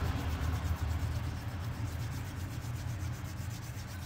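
Palms rubbing together, rolling a softened lump of Cushion Grip thermoplastic denture adhesive into a thin rope: a steady, soft rubbing hiss that slowly grows quieter, over a low steady hum.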